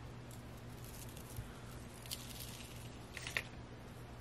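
Faint, scattered rustling and scraping as fingers dig through dry silica gel crystals in a plastic tub, searching for dried petals, a few short scrapes a second or so apart over a low steady hum.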